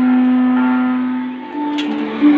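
Background music of long held notes. The lowest note fades about three-quarters of the way through as a lower note comes in, and there is a short click near the end.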